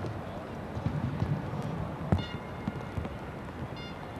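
Football stadium ambience on a TV match broadcast: a general background hum of the ground with irregular low thumps. Two brief high-pitched tones sound, about two seconds in and near the end.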